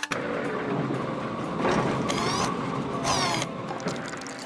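Cartoon sound effect of a drink-filling machine starting up after a lever pull: a dense mechanical whirring and rattling, with two short high zipping sweeps about two and three seconds in.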